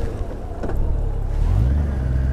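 Honda GL1800 Gold Wing's flat-six engine pulling away from a stop, its low drone rising in pitch about a second and a half in as the bike accelerates.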